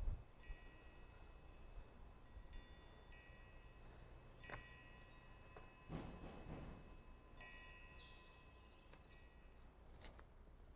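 Near silence with faint high chime-like ringing tones that come and go several times, and a soft rustle about six seconds in.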